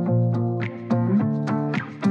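Background music: a plucked guitar tune at a quick, even pace.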